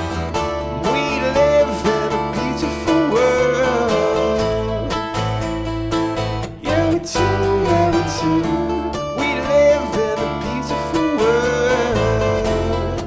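Live acoustic band playing: strummed acoustic guitar with a harmonica carrying a bending melody over it, in an instrumental stretch of the song.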